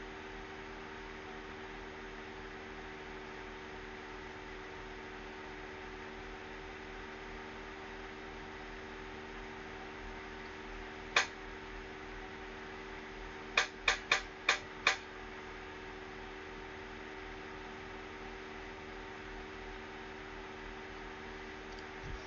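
Steady room hum with fan-like noise and a few constant low tones. One sharp click sounds about halfway through, followed a couple of seconds later by a quick run of four clicks.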